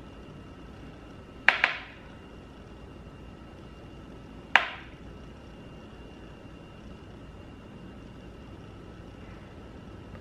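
Sharp clicks from hard makeup packaging being handled while highlighter is applied with a brush: a quick double click about a second and a half in, then a single click about three seconds later.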